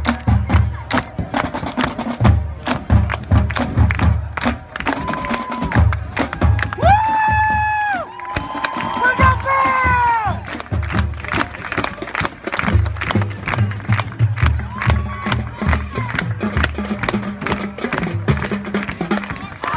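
Marching band drumline playing a cadence: sharp snare strokes over groups of bass drum hits. About a third of the way in, the crowd cheers, with long whoops that fall away.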